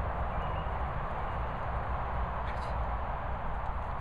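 Steady outdoor background noise: a low, unsteady rumble under an even hiss, with no distinct events standing out.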